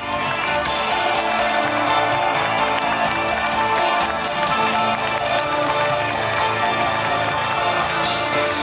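Live pop-rock band music played loud over an outdoor concert PA, heard from among the audience, with sustained chords and no clear vocal line. The sound cuts in with a brief dip at the very start.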